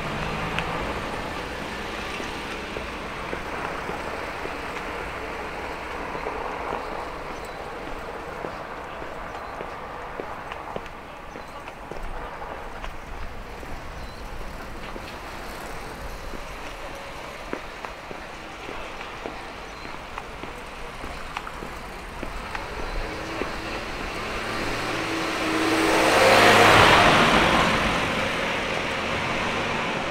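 A small box delivery truck drives past close by. Its engine and tyre noise swells to a peak about 27 seconds in and fades as it moves away, over a steady low hum of a quiet residential street.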